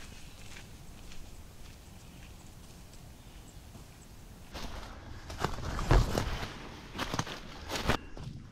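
Footsteps on a dirt trail strewn with dry leaves: faint at first, then from about halfway through a run of louder, closer steps crunching the leaf litter, with one heavier thump among them.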